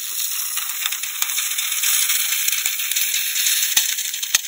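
Steady loud hiss with a few scattered light clicks as coloured foam streams out through the holes of a Crocs clog.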